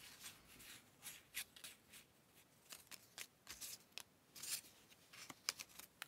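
Faint, scattered rustles and light ticks of small paper circles being picked up, shuffled and set down by hand.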